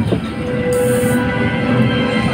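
Loud soundtrack of a dinosaur film played through theatre speakers: a dense low rumble under held musical tones, with a brief high hiss a little under a second in.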